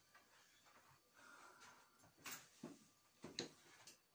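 Near silence with faint handling noise: a brief rustle, then a few soft knocks, the loudest near the end, as an acoustic guitar is held and the player settles onto a seat.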